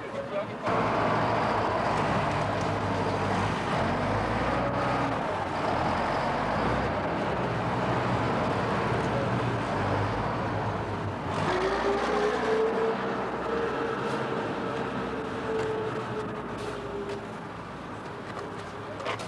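Road-construction machine's diesel engine running steadily, with a steady whining tone for several seconds in the second half.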